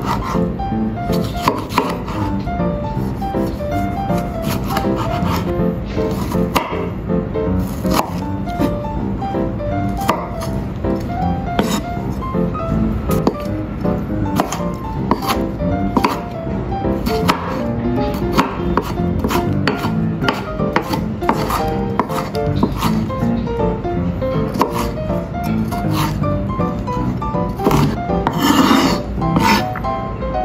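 Chef's knife slicing and dicing a tomato on a wooden cutting board: many irregular knife strikes against the board. Background music plays throughout.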